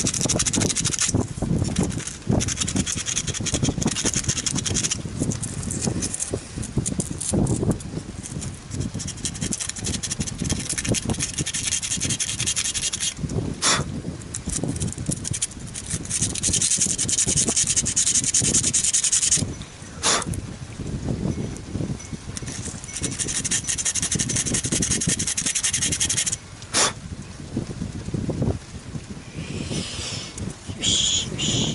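Close rubbing and rustling of hands handling small wooden model-ship parts against the wooden hull, going on throughout, with three sharp clicks spread through it.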